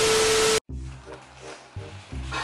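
A burst of TV static with a steady test-tone beep, cutting off sharply just over half a second in. Background music with a repeating bass line then starts.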